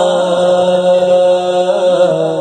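A man's voice singing a devotional song, holding one long steady note.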